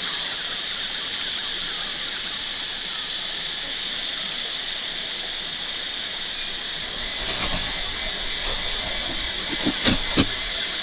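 Steady high-pitched drone of a forest insect chorus. A couple of short, sharp clicks come near the end.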